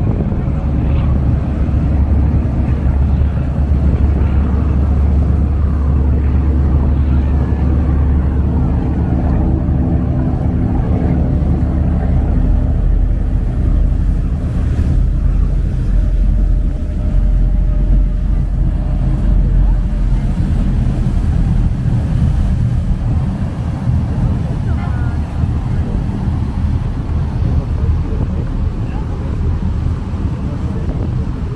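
Passenger ferry's engine running with a steady low rumble under way, with the churning wash of its propeller behind it.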